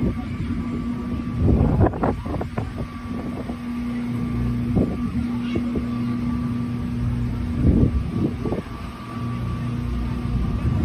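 A motor running with a steady hum, under wind rumbling on the microphone, which gusts louder about two seconds in and again near the end.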